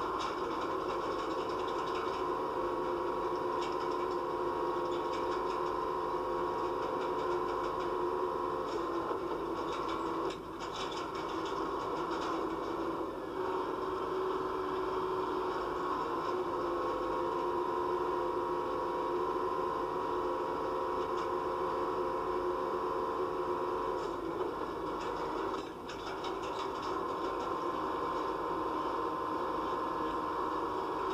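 Crane engine and winch running steadily during dynamic compaction, a droning hum whose note shifts about 9 seconds in and again near 24 seconds. There are brief clattering breaks around 10 and 25 seconds.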